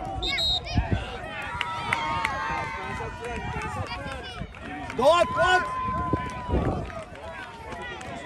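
Overlapping shouts of people on and around a soccer field, with no clear words. Two long drawn-out calls, one starting about two seconds in and another about five seconds in.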